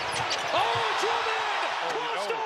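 Live basketball play: sneakers squeaking on the hardwood court in a string of short chirps that rise and fall in pitch, starting about half a second in, over a steady crowd murmur.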